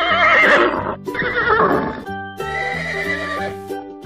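A horse whinnying twice, a wavering, quavering call in the first second and a shorter one just after, as a sound effect over children's background music with held instrument notes.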